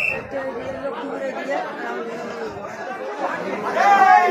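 Many men talking at once in a crowd, with a whistle blast cutting off right at the start and a loud shouted call near the end.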